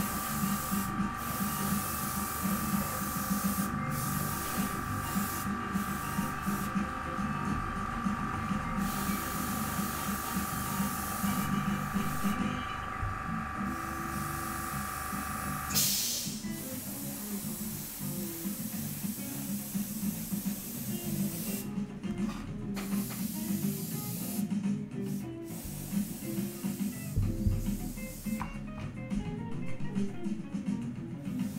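Airbrush hissing in short on-off spells as paint is sprayed onto a plastic model in light passes, with one short, stronger burst of hiss about halfway through. Background music plays underneath.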